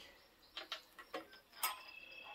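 Faint scattered clicks and light taps from handling a wired meat-thermometer probe over a grill grate, the sharpest click about one and a half seconds in, followed by a brief high steady tone.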